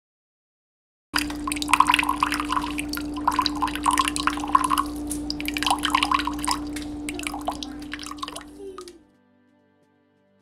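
Rapid, irregular water drips and splashes over a steady hum, fading out about a second before the end.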